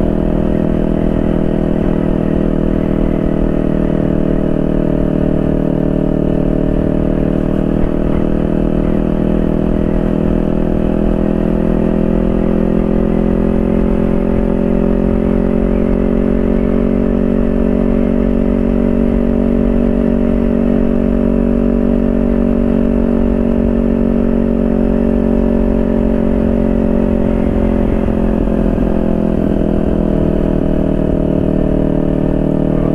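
Motorcycle engine running steadily at cruising speed, its pitch rising and dipping slightly now and then.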